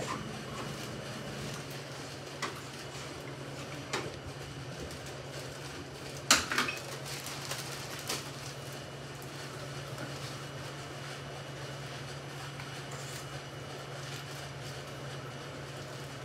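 A spoon clinking and knocking against a glass jar of raspberry jelly as jelly is scooped into a piping bag: a few scattered clicks, the loudest about six seconds in, over a steady low hum.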